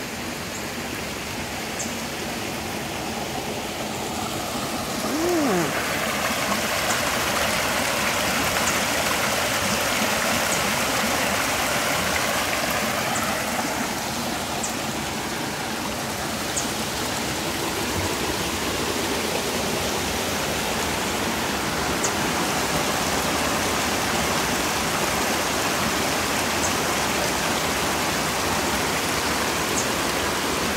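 Steady rush of running water from the stream that carries the pond's outflow down to the mill, growing louder a few seconds in and then holding.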